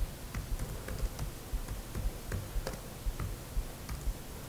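Laptop keyboard being typed on: a dozen or so separate key clicks in an uneven rhythm, about three a second.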